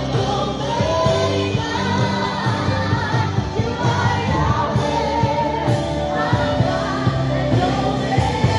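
Live worship music: a praise band with a steady drum beat, and voices singing together in a sustained praise song.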